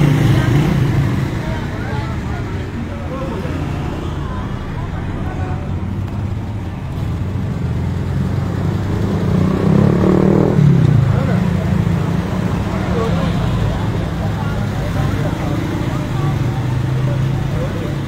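Street traffic: car and motorcycle engines running close by, with a steady low rumble and voices in the background. A car passes loudly about ten seconds in.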